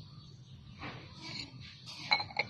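Faint animal calls about a second in, over a steady low background hum.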